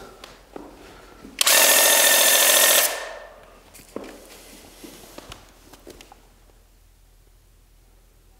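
Graco TC Pro cordless handheld airless paint sprayer firing one burst of about a second and a half, its pump motor whining over the hiss of the spray, set to a low pressure for thinned oil-based paint. A few faint clicks follow as the gun is handled.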